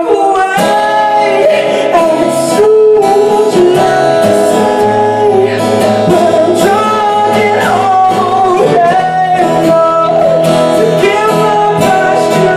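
A male singer singing a slow melody to his own acoustic guitar accompaniment, played live.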